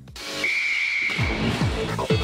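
Radio show intro jingle: a sudden rush of noise, a held high whistle-like tone, then a beat of falling bass hits starting a little after a second in.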